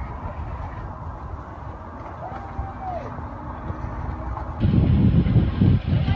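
Low rumble of wind on a phone microphone, with a faint distant voice. About four and a half seconds in, the wind noise turns much louder and gusty.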